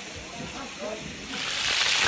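Chicken pieces frying in a large aluminium pot. The sizzle is low at first and swells sharply, becoming much louder, about a second and a half in as the meat browns.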